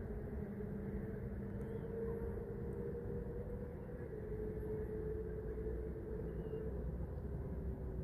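A steady, low engine drone with an even hum running throughout.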